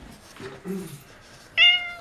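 A cat shut in a plastic pet carrier meowing: a quieter low sound about half a second in, then one loud, high meow near the end.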